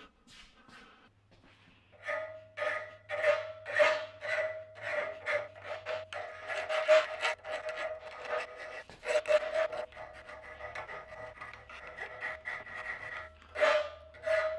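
Hand file rasping back and forth across the edge of a small metal piece clamped in a bench vise, starting about two seconds in at roughly two strokes a second, with a steady ringing tone under the strokes. The vise holds the piece rigid.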